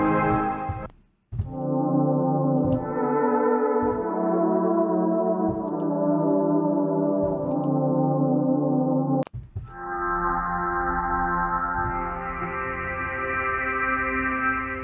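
Omnisphere synth patches built from lo-fi samples of old orchestral recordings, played as sustained chords. A brass chord stops briefly about a second in, then a lo-fi brass pad holds until about nine seconds in. It cuts off there, and a soft sustained string texture takes over and brightens a few seconds later.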